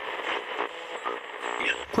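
Faint, muffled voices in the background of a low-fidelity, band-limited broadcast recording, in a gap between spoken lines.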